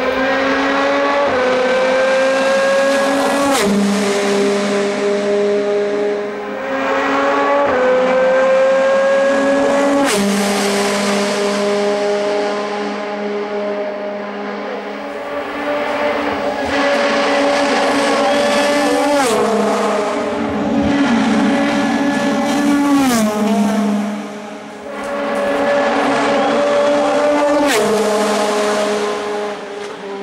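Audi A4 DTM race car's V8 engine at high revs, its pitch climbing through each gear and dropping sharply at rapid gear changes, with sharp cracks at several of the shifts. The sound swells and eases twice as the car passes.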